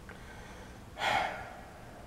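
A man sighs once, a short breathy exhale about a second in that fades away.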